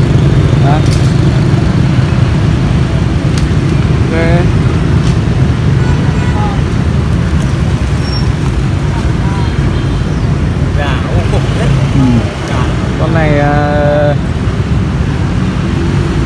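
Steady low rumble of street traffic, with a few scattered voices talking in the background.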